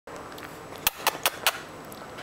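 Four quick, sharp clicks in a row, about five a second, made by a person off camera.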